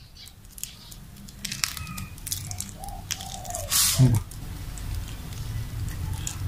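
Food preparation by hand on wooden chopping boards: raw beef squeezed and handled with wet squishing, and a knife cutting herbs with a few light knocks, plus a short rush of noise about four seconds in, over a low steady hum.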